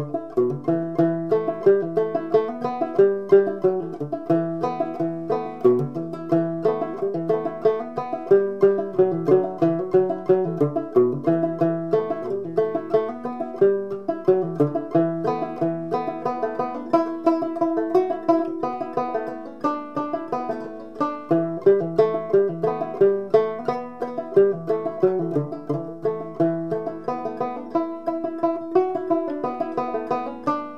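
Gut-strung banjo made by Luke Mercier, played clawhammer style: a steady, rhythmic stream of down-struck plucked notes over a drone, in an old-time tune.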